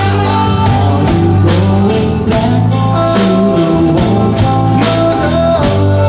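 A live band plays a soft-rock song: a drum kit keeps a steady beat under bass and a sustained saxophone line.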